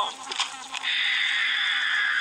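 A short laugh, then about a second in a harsh, high-pitched recorded screech blasts from a handheld speaker box and holds steady.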